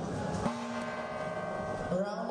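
Boxing ring bell struck about half a second in, ringing on steadily for about a second and a half: the signal that starts the round.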